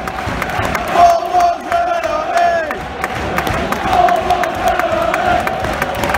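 Football crowd chanting in unison in the stands, long held notes that drop in pitch at the end of a phrase about two and a half seconds in.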